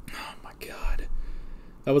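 A man's breathy, unvoiced exhaling, twice in the first second, then he starts speaking near the end.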